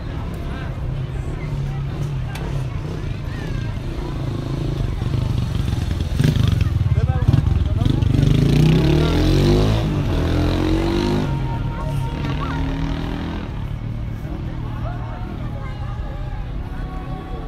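Outdoor ambience of people talking and walking, with a motor engine passing by that swells in the middle and is loudest around eight to ten seconds in.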